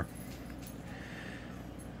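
Quiet room tone: faint steady background noise with no distinct events.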